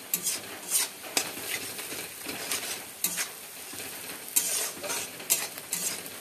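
Shredded fish with onions sizzling in oil in a kadai, while a metal spatula stirs and scrapes across the pan in irregular strokes over the steady hiss of the frying.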